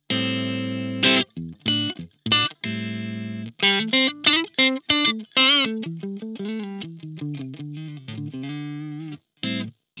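Ibanez SA360NQM electric guitar played completely clean through its front Resolution single-coil pickup, with no reverb or delay. A few ringing chords open it, one held for about a second, then a quick run of single picked notes with some vibrato, all with a snappy, very Strat-like tone.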